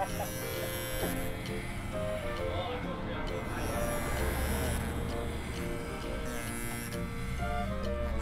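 Corded electric hair clippers buzzing as they cut close-cropped hair, under background music with a stepping melody.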